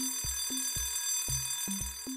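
A cartoon alarm-clock ringing sound effect, a steady high ring marking the end of the quiz countdown, over background music with a steady beat.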